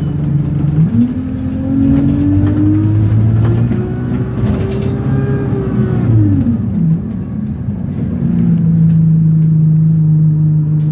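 Engine of Abellio London bus 8322 heard from inside the moving bus: its note rises steadily as the bus accelerates from about a second in, drops sharply near seven seconds as it eases off, then settles back to a steady drone.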